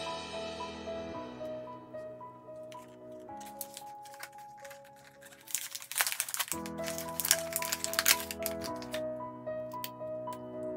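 Background music with soft, piano-like notes. From about five and a half to eight and a half seconds in, there is a flurry of crinkling and sharp clicks as an LED tea light is pulled out of its plastic blister pack.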